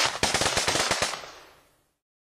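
A burst of rapid automatic gunfire, about eight shots a second, that begins sharply and fades out within about a second and a half.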